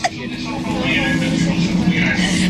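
Steady low hum and rumble of a passenger train carriage in motion, with a woman's laughter over it.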